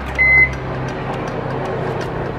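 IFB convection microwave oven giving one short beep from its keypad as a 30-minute cake bake is started, then running with a steady hum.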